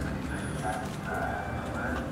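Faint background voices from an exhibit's recorded astronaut audio, with a picture-book page being turned near the start.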